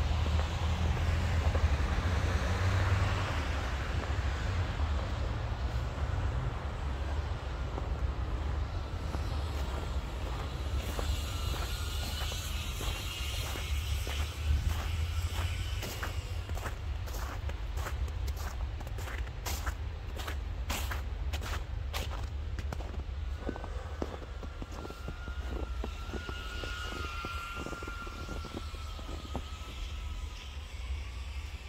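Footsteps crunching on packed snow, about two steps a second through the middle of the stretch, over a steady low rumble of city traffic.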